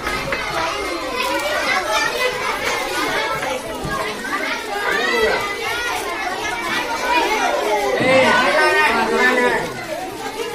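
A crowd of children chattering and calling out at once, many voices overlapping, growing loudest near the end.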